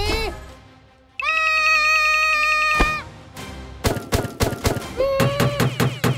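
Cartoon soundtrack of music and sound effects. A short rising squeak leads into one long held high-pitched cry, then a run of quick clicks and knocks with another short squeaky sound near the end.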